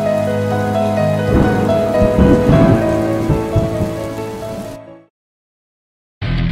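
Heavy rain pouring over soft background music with long held notes; the rain comes in about a second in, and everything fades out to silence about five seconds in.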